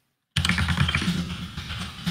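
Rapid typing on a computer keyboard, close to the microphone, starting about a third of a second in: a Linux shell command being entered.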